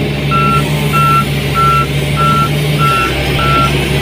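Excavator's diesel engine running steadily under a digging load, with its warning alarm beeping evenly about every 0.6 seconds.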